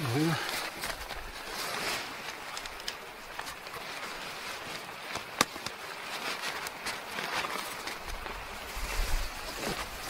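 Nylon tent fly rustling and scraping as it is handled at a corner, with small ticks and one sharp click about five and a half seconds in, over a steady hiss.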